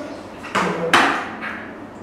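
A soft thud about half a second in, then a single sharp smack-like knock about a second in.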